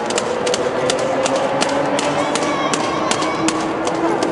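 Many running shoes slapping on asphalt as a dense pack of runners passes close by, an irregular patter of sharp taps. Spectators' voices call out in long, drawn-out shouts beneath.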